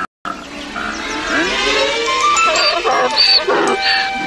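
Television score music: a short cue of stepped notes with short, bright high notes near the end.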